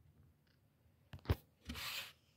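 Fingers handling a hard plastic coin display case: a few light knocks about a second in, then a short rubbing scrape near the end.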